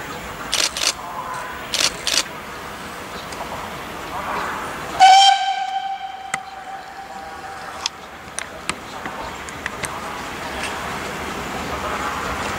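Ty2-911 steam locomotive sounding its whistle once, a steady pitched blast that starts suddenly about five seconds in and lasts about three seconds, over the steady noise of the approaching train. A few short sharp bursts come in the first two seconds.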